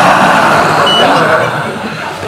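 Men's voices shouting a haka-style chant together. A short high beep sounds about a second in.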